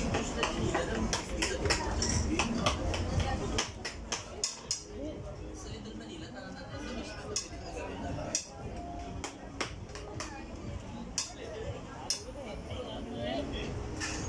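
Chatter of diners with frequent short clinks of cutlery on plates, louder for the first few seconds.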